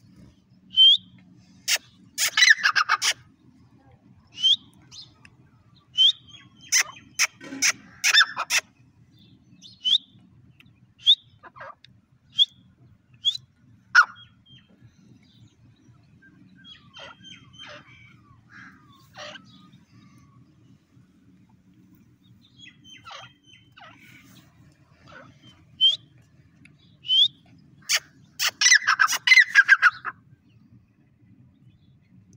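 Grey francolin (teetar) calling: short high notes that flick upward, repeated every second or two. Three bursts of loud rapid notes come about two seconds in, around seven to eight seconds, and again near the end.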